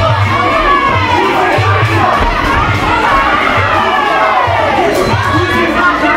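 A fight crowd shouting and cheering, many voices overlapping, over music with a steady low beat about every second.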